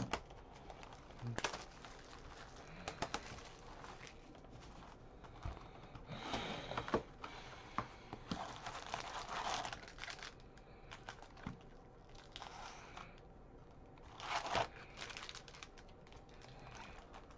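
Foil trading-card pack wrappers crinkling and a cardboard box rustling as the packs are handled and taken out of a 2020 Bowman Draft hobby box, in several short bursts with a few small clicks between.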